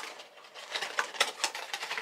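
Small cardboard boxes being opened by hand: after a quiet start, a quick run of clicks and rustles of cardboard flaps and packaging, beginning a little under a second in.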